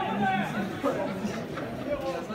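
Indistinct chatter: several people talking at once, with no clear words.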